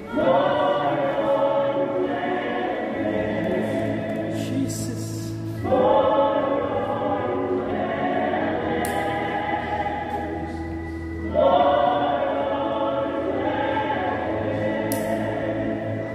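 Choir singing a slow piece in three sung phrases, each opening louder, roughly every five and a half seconds.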